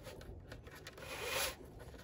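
Sweeper strip of a Hoover HushTone upright vacuum being slid out of its slot in the brush-roll housing: a faint rubbing scrape that builds from about a second in and stops at about one and a half seconds.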